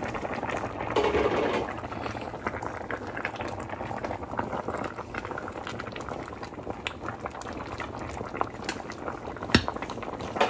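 A pot of greens soup bubbling at a steady boil. A single sharp click sounds near the end.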